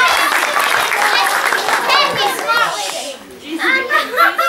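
A group of children cheering, squealing and chattering all at once, with some hand-clapping. The noise dies down about three seconds in, and a few voices start again near the end.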